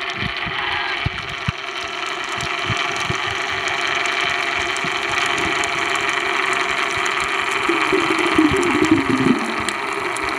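Steady underwater noise picked up through the camera's housing: a continuous hum with hiss, a few soft low knocks in the first few seconds, and a louder wavering low tone between about eight and nine seconds in.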